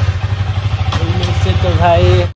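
KTM Duke 250's single-cylinder engine idling: a steady low pulsing hum. The owner says the bike has not been running properly.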